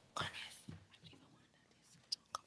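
A brief, faint whisper at the lectern microphone near the start, then a small click and near silence.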